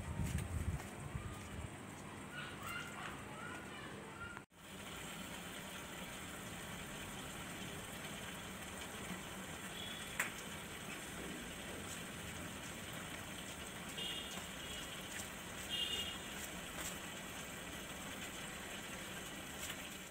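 Aquarium air bubbler and filter running: a steady bubbling and trickling of water, with a brief drop-out about four and a half seconds in.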